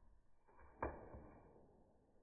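Paper banknotes rustling once, briefly, about a second in, as a cat rolls on a pile of them, then a faint second rustle. Otherwise quiet room tone.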